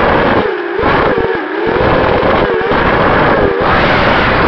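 Brushless motors and propellers of an FPV racing quadcopter (Sunnysky 2204 motors) whining, heard through the onboard camera with wind noise over the microphone. The pitch rises and falls with the throttle and drops away briefly twice in the first second and a half, then twice more, shorter.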